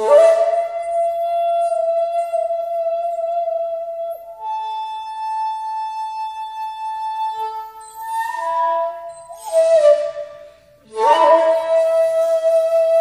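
Solo shakuhachi (Japanese end-blown bamboo flute) playing long held notes with a rush of breath at each attack. A lower note is held for about four seconds, then the player moves to a higher note and holds it. Near the end there is a brief gap, then a fresh breathy attack returns to the lower note.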